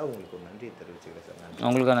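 A man crying: faint choked voice sounds, then a loud, drawn-out wavering wail that begins near the end.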